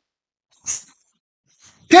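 Near silence, broken by one brief breathy sound about two-thirds of a second in; a man's voice comes in right at the end.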